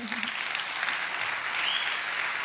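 Audience applauding steadily at the end of a talk.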